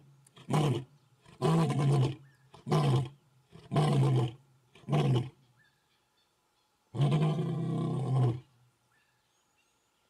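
Male lion roaring, a territorial roar of challenge to rival males: a run of five short calls about a second apart, then one longer call about seven seconds in, closing the bout.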